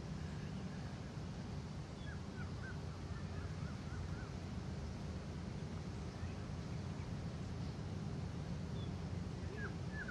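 Outdoor ambience with a steady low rumble, and a bird giving a quick run of short, faint rising chirps about two to four seconds in, with one more chirp near the end.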